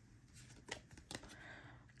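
Tarot cards being handled, faint: a couple of soft clicks well under a second apart, then a light slide as a card is drawn from the deck.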